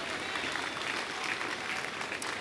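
A large congregation applauding steadily.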